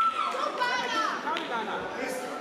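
Children's and adults' voices calling and shouting in a large sports hall, opening with a high-pitched held shout. A single short sharp smack sounds about one and a half seconds in.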